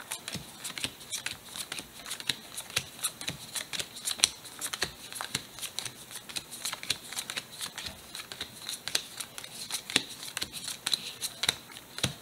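Pokémon trading cards being dealt one at a time from a hand-held stack onto piles on a cloth-covered table: a steady run of short card flicks and slaps, several a second.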